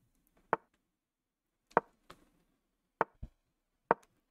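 Short clicks from an online chess board's move sound as pieces are played in quick succession in a fast game, about six in the space of four seconds at uneven intervals.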